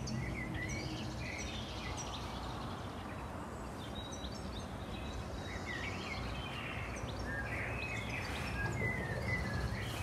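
Small birds chirping and calling on and off, short high chirps scattered throughout, over a low, steady outdoor background noise.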